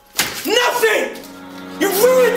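A single sharp slap of a hand striking a face, just after the start, heard over background music with a singing voice.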